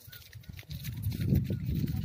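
Wind buffeting the microphone: an uneven low rumble that swells from about half a second in.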